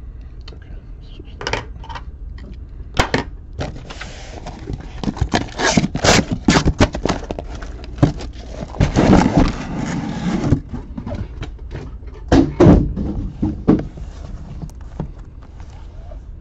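A taped cardboard shipping case being cut and pulled open: tearing and scraping of cardboard and packing tape with sharp knocks. The busiest stretch of rustling and scraping comes in the middle, followed by the knocks of boxes being shifted inside the case.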